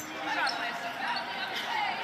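Live basketball play heard from courtside: players moving and the ball in play on the hardwood court, under arena crowd noise and faint voices.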